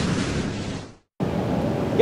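A noisy whoosh-and-rumble sound effect from an animated logo intro, fading out and cutting off about a second in. After a short silence, the steady background noise of a busy exhibition hall takes over.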